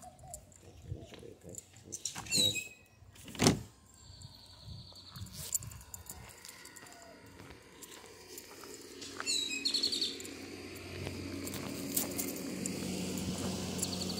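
Birds chirping in short high calls. There is a sharp knock about three and a half seconds in, and a low steady hum grows louder over the second half.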